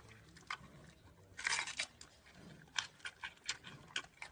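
Giant panda biting and chewing a fresh bamboo shoot: crisp cracks and crunches, with a dense, loud crunch about a second and a half in and a quick run of snaps near the end.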